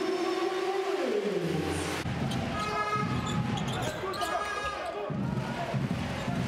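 Live basketball game sound from an arena: crowd noise with a pitched, falling glide in the first two seconds. From about two and a half to five seconds in come short high squeaks that fit sneakers on the hardwood court. The sound changes abruptly about two seconds in and again at about five seconds.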